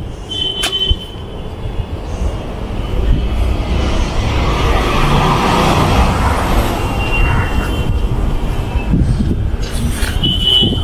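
Steady outdoor rumble and hiss with no speech. A broader rushing sound swells in the middle, and a couple of short high tones come near the start and again about seven seconds in.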